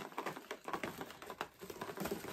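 Plastic packaging and gift-basket items being handled and pushed into place, giving a run of quick, irregular crinkles and clicks.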